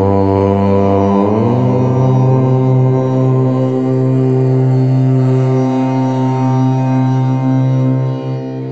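A low-pitched voice chanting one long, held "Om" over a steady background drone. It starts suddenly, shifts in tone through its first second or so, then settles into an even hum that fades out near the end.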